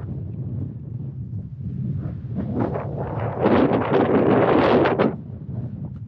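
Wind buffeting the camera microphone with a steady low rumble. A stronger gust hits about three seconds in and lasts nearly two seconds, the loudest part, then eases.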